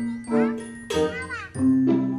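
Background music: a bright, jingly melody of held and gliding notes.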